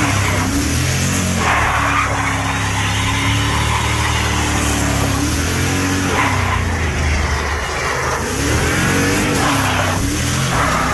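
Dodge Ram pickup's 4.7-litre V8 held at high revs through a burnout, the rear tyres spinning and squealing on the pavement. The engine pitch rises and falls several times as the throttle is worked.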